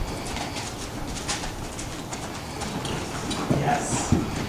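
Hoofbeats of a cantering horse on soft arena dirt, with a bird calling in the background.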